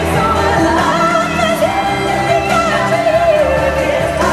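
Female lead singer singing a long, wavering vocal line over a pop backing track, performed live in a large hall.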